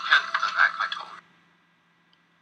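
Soundtrack of an old film clip playing back, thin-sounding with little low end, cutting off suddenly about a second in as a pause event halts playback.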